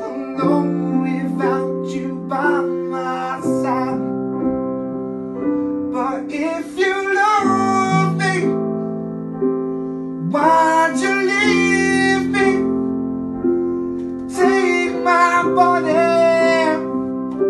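A man singing a ballad along to a solo piano karaoke backing track. He sings four phrases, with sustained piano chords between them.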